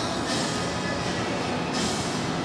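Steady noisy indoor-arena din with faint background music, and a high hiss that swells and fades roughly every second and a half.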